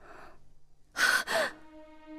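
A woman gasping sharply twice in shock, about a second in, over faint background music.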